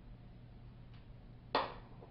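One sharp clack about one and a half seconds in, a hard object knocked down onto a bathroom counter, over a low steady hum.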